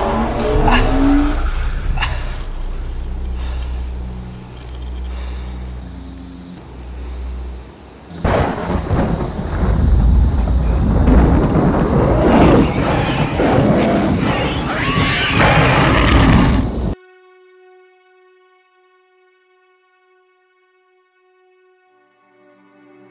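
Film sound effects for a supernatural energy attack: a low rumbling drone, then a sudden loud blast about eight seconds in that churns on until it cuts off abruptly about nine seconds later. Faint music with long held notes follows.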